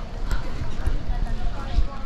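Footsteps on a sandy path, about two a second, with low thumps from a handheld camera's microphone as the camera is turned around, over a faint murmur of voices.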